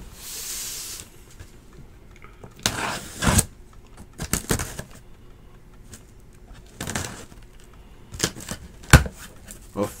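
A cardboard case of boxes being opened and handled. A short hiss of tape or cardboard comes just after the start, followed by irregular scrapes, rustles and knocks of cardboard against cardboard and the table, with a sharp knock near the end.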